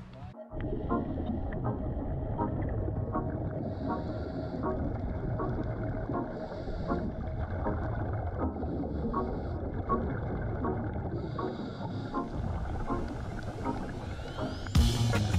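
Underwater sound picked up by a diver's camera: a scuba diver breathing through a regulator, with a short hiss about every two and a half seconds, four times, over a steady muffled rumble with faint regular clicks.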